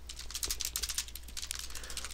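Typing on a computer keyboard: a quick run of light, fairly soft keystrokes.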